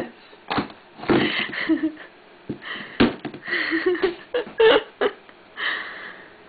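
A large knife striking a hard, hollow chocolate bunny in a series of sharp knocks, about seven in six seconds, with short breathy vocal sounds between the strikes.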